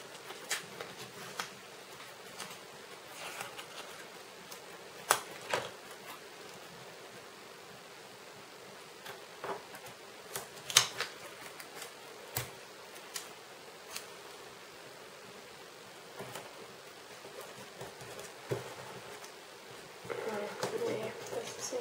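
Hands working washi tape and paper on a planner page: scattered light taps, clicks and rustles as the tape is laid and pressed down, over a faint steady hiss.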